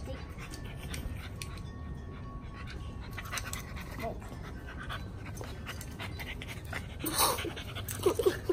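A puppy panting in quick, soft breaths over a steady low rumble, with one short, louder sound about seven seconds in.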